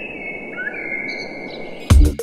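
Film soundtrack: several high, drawn-out whistling tones overlap and slide slightly over a low rumble. Near the end a heavy electronic drum beat starts.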